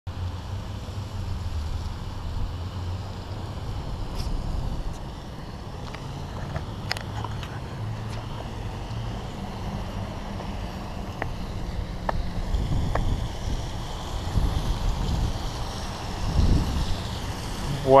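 Steady low rumble of a hand-pulled rickshaw-style cart's wheels rolling over pavement and brick, with a few light clicks and rattles.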